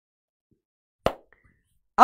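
Near silence broken about a second in by a single short knock or thump, followed by a faint brief high tone.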